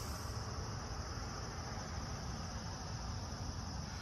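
A faint, steady insect chorus, like field crickets, with a low rumble underneath.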